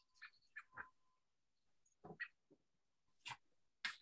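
Near silence: room tone broken by a few faint, very short clicks and ticks.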